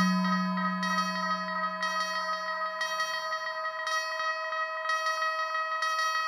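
Eurorack modular synthesizer playing a generative ambient piece through heavy delay: a chord of steady sustained tones, with a low note that fades out about halfway and high overtones that pulse roughly once a second.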